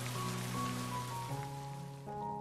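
Soft background music of held notes over the hiss of a rain sound effect; the rain fades out near the end.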